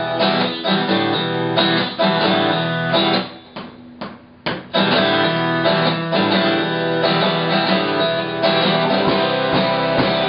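Live alt-country band playing an instrumental passage, with a strummed acoustic guitar to the fore over bass, drums, fiddle and electric guitar. A little over three seconds in, the band drops nearly out for about a second, then comes back in together.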